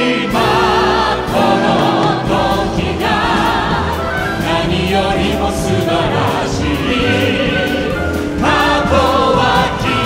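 Several singers singing together in long phrases with vibrato on held notes, over a full orchestra, in a live concert recording.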